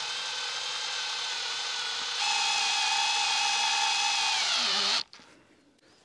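Craftsman cordless drill driving a four-inch lag screw, set through a two-inch wooden dowel, into the end of a wooden fence rail: a steady motor whine that steps up about two seconds in, falls in pitch just before it stops, and cuts off suddenly about five seconds in.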